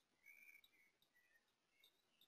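Near silence: faint room tone with a few faint, short high chirps in the first second and soft ticks.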